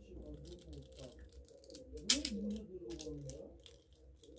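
Small plastic clicks and rattles of a transforming Mecanimal dragon toy's parts being folded by hand into car form, the loudest click about two seconds in.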